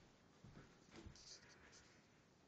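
Near silence: room tone with a few faint soft thumps and rustles.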